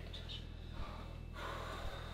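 Faint breathing from a person over a low steady hum, in a quiet room.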